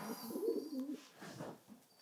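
Racing pigeons cooing softly, a low wavering warble that fades out about a second and a half in.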